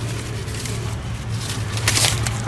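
Newspaper crinkling as a hand handles the paper wrapped around the roots of the cuttings, with a sharp crackle near the end, over a steady low hum.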